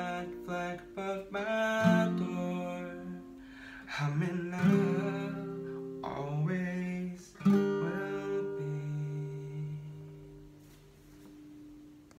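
Acoustic guitar (an Elypse Electra Deluxe played unplugged, capoed at the fifth fret) strummed in chords, with a male voice singing over it. After a last strum about seven and a half seconds in, the final chord rings on and fades out as the song ends.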